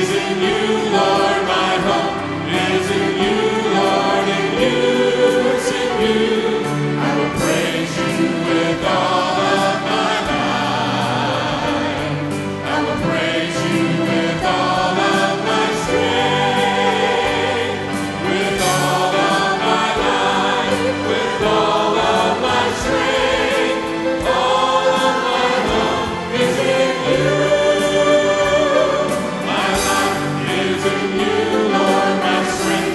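A gospel vocal ensemble of men's and women's voices singing together into microphones, continuously.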